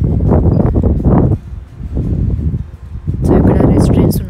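Wind blowing across the microphone in loud, uneven gusts, heavy in the low end, with indistinct voices mixed in.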